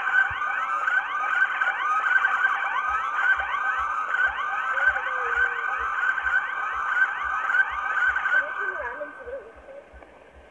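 Police car siren sounding in a fast yelp, a rising sweep repeated several times a second over a steady tone. It cuts off about nine seconds in.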